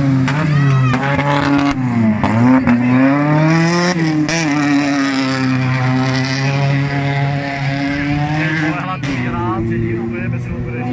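Hatchback race car engine at high revs on a muddy dirt track, its note dipping about two seconds in, climbing to a peak near four seconds, then holding and slowly falling as the car drives on.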